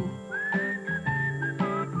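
Soft background music with a whistled tune over it: a long high note that slides up shortly after the start and holds, then a lower note near the end.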